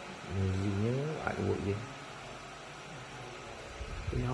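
A man's low, drawn-out wordless exclamation, rising in pitch over about a second and a half, followed by quiet room tone.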